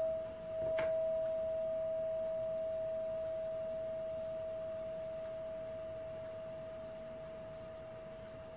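Single-note resonator chime bar struck with a rubber-headed mallet, hit again about a second in, then one clear steady tone ringing on and slowly fading. It is rung as a signal to settle into quiet listening.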